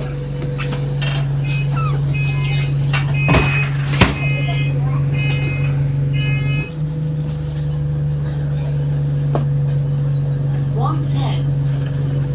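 Cabin sound of a moving single-deck bus. A steady engine and road drone runs throughout, with a few rattles and knocks. A run of short high-pitched tones comes in the middle, and the engine note drops and shifts about two-thirds of the way in.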